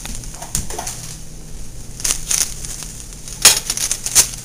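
Handling noise from a handheld camera being swung about: rustling and several sharp knocks, the loudest about three and a half seconds in.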